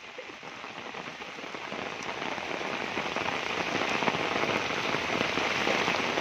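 Heavy rain pouring onto deep floodwater in a street, countless drops splashing on the water surface. A steady hiss that grows gradually louder.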